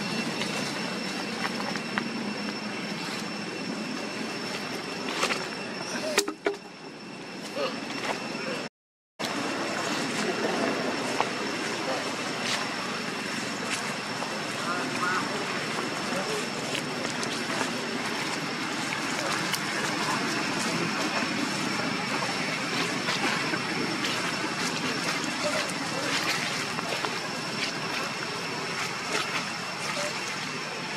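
Indistinct background voices of people talking over steady outdoor noise, with a thin, high, steady whine. The sound cuts out completely for about half a second some nine seconds in.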